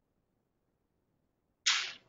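Near silence, then about a second and a half in a sudden, loud, short hiss that fades within about a fifth of a second.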